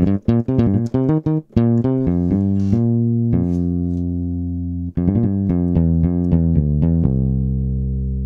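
GarageBand's sampled P-Bass (precision electric bass) played from the iPad's on-screen keyboard: a quick run of plucked notes, then slower held notes, and a last note left ringing and fading near the end, sounding almost fretless.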